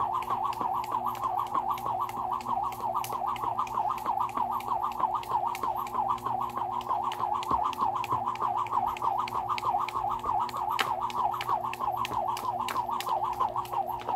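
A jump rope turning fast, whirring through the air and slapping the ground on every turn in a quick, steady rhythm.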